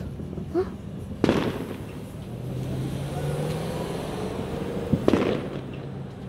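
Fireworks going off: two sharp bangs, one a little over a second in and one about five seconds in, each with an echoing tail. Between them a low hum rises slightly in pitch.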